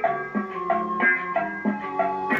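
The fourth background-music tune built into a Ranger RCI-63FFC1 CB radio is playing: a short looping electronic melody of plucked-sounding notes, about three a second.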